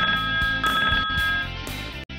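Telephone ringing in steady high tones, sounding twice and stopping about one and a half seconds in, over background music with guitar.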